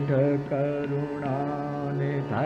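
Hindustani classical vocal music in raga Marwa, slow vilambit khayal: a male voice holds long notes with slides between them over a steady tanpura drone, accompanied by harmonium.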